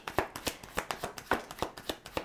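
A deck of tarot cards being shuffled by hand: a quick, irregular run of soft card slaps and flicks.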